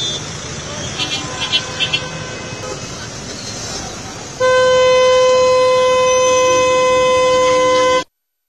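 Crowd chatter and traffic with a few short horn toots. About halfway through, a vehicle horn sounds on one steady note, held loud for about three and a half seconds until it cuts off at the end.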